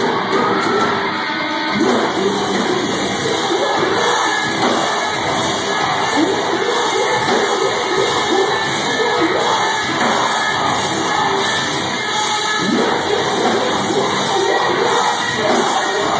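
Metalcore band playing live and loud through the hall's PA, with the crowd shouting along over the music.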